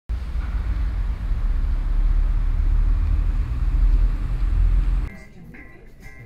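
A loud, steady low rumble with a hiss of noise above it, like vehicle or traffic noise, cutting off suddenly about five seconds in; a much quieter stretch with short high tones follows.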